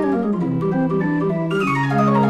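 Odin 42-key hand-cranked mechanical organ (barrel organ) playing from perforated cardboard books: quick descending runs of notes over held bass notes.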